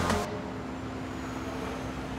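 Steady rumble of city road traffic, after a short music hit that breaks off right at the start.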